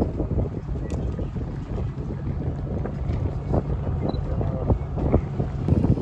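Wind buffeting the microphone over the steady low rumble of a tour boat cruising on open water; the sound gets gustier and louder near the end.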